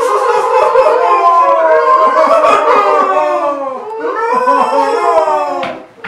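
A person's loud, drawn-out howling cry, wavering in pitch, held for about four seconds, then a second shorter cry near the end.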